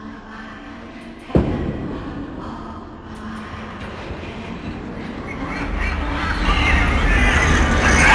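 A single loud thud about a second in, then a rumbling, rushing sound that swells steadily louder toward the end.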